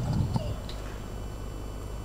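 Quiet background picked up by the commentary microphone between calls: a low steady hum, with a brief low rumble and a faint click in the first half second.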